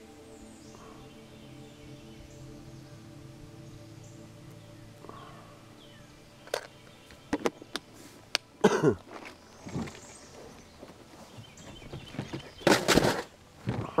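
Soft background music of steady held tones through the first half, then a run of sharp clicks and knocks with a few short falling sounds, and a louder noisy stretch near the end.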